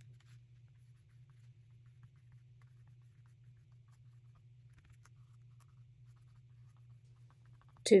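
Near silence: a faint, steady low hum of room tone. A woman's voice starts right at the very end.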